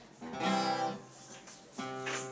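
Steel-string acoustic guitar strummed: two chords about a second and a half apart, each left to ring.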